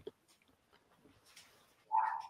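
Near silence for most of the time, then a brief high-pitched whine just before the end.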